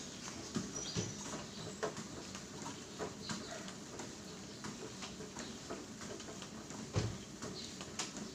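Footfalls on a treadmill belt at a slow walk: soft thuds roughly every half second to a second, with one heavier thump about seven seconds in, over a low steady hum.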